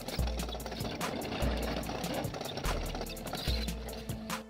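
Background music with a steady beat and deep bass notes, over a continuous rattling, grinding noise from an excavator-mounted chain cutter whose toothed chain is cutting a trench through rock and soil.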